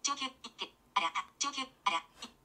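Smartphone screen reader speaking in short, quick bursts of synthesized speech through the phone's speaker as keys are pressed to type a text message.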